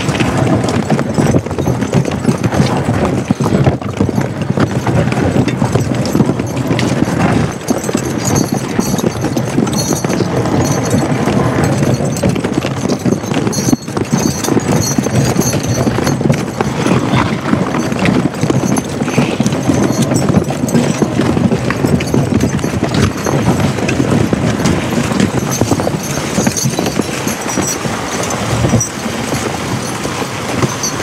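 A two-horse draft team, a Percheron and a Suffolk Punch, walking steadily over icy snow. Their hooves clop and crunch continuously, with the harness trace chains jingling and the sled moving behind them.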